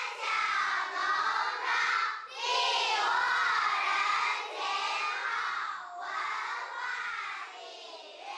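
A group of children singing a folk song together, in high voices with long, wavering held notes. The singing grows quieter near the end.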